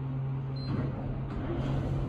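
Kone traction elevator car's doors sliding open at a landing, over the car's steady low hum, with a short high beep about half a second in.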